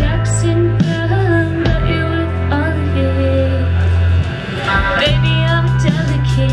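Live band performing a song: a woman singing over two electric guitars and drums, with sustained low notes underneath.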